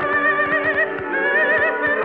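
Operatic voices singing with a wide vibrato over a sustained orchestra, heard through a 1958 live recording that carries nothing in the upper treble.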